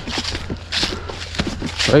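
Footsteps through dry grass and leaf litter, an uneven series of crunching steps, with hard breathing from running.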